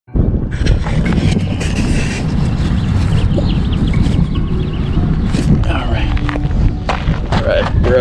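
Voices outdoors over a steady low rumble.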